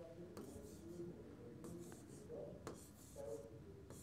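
Faint scratching strokes of a stylus drawing on an interactive touchscreen display.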